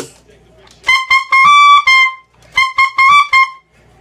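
Tenor saxophone playing short high notes in the altissimo register, sounded with overtone fingerings. There are two quick runs of notes, each lasting about a second, and the first ends on a longer held note.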